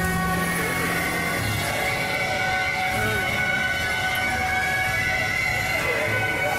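Beiguan procession music: shrill suona reed horns holding long, steady high notes, over a low beat about every second and a half. A low held note dies away about a second and a half in.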